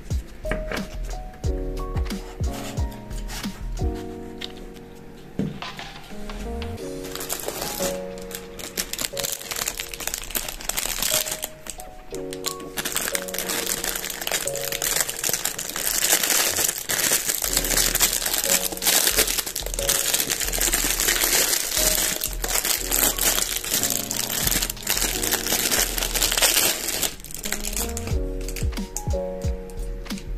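Clear plastic packaging bag crinkling as it is handled and opened, starting about seven seconds in and stopping near the end, over light background music.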